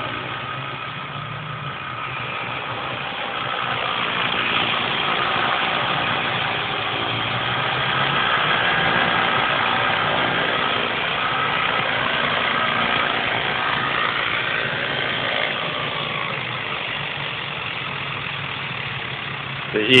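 Electric motor and spinning rotor blades of a Multiplex Funcopter radio-controlled helicopter whirring steadily in flight. The sound grows louder as the helicopter comes in close and low, then eases as it sets down on the grass near the end.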